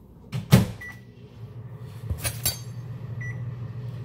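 Microwave oven shut with a loud clunk, then a short beep, and the oven starts running with a steady low hum; a couple of light clicks and a second short beep follow.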